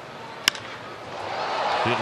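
A single sharp crack of a wooden bat hitting a pitched baseball about half a second in, followed by ballpark crowd noise that swells over the next second.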